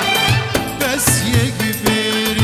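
Kurdish folk song performed live: a male voice singing over a band accompaniment with a steady drum beat.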